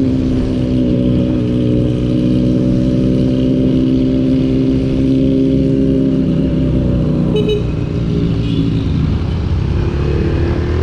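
Rusi Sigma 250 motorcycle engine running at a steady cruising speed, heard from the rider's seat with wind rumble on the microphone. The engine note eases off about seven seconds in, and a brief high tone sounds at about the same time.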